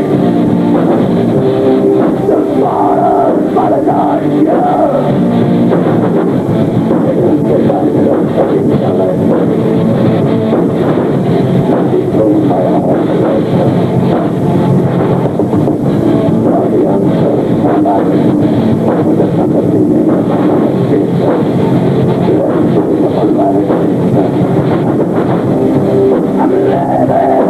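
Live heavy metal band playing an instrumental passage: distorted electric guitars, bass and drum kit, loud and continuous without a break.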